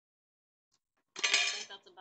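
Small cosmetic items clinking and clattering together inside a makeup bag as it is handled and tipped, one short burst about a second in.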